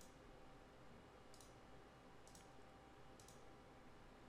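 Three faint computer mouse clicks about a second apart, over near-silent room tone.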